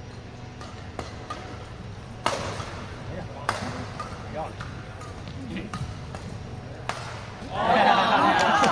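Badminton rackets hitting the shuttlecock in a rally: sharp cracks at uneven spacing, the loudest two a little over a second apart, with a few voices between. Near the end a crowd's cheering and chatter breaks out as the rally ends.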